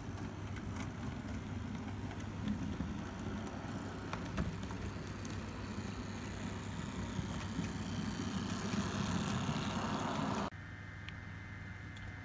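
Model diesel locomotive running along the layout towards the camera, a steady running noise that grows a little louder as it approaches and cuts off suddenly about ten and a half seconds in.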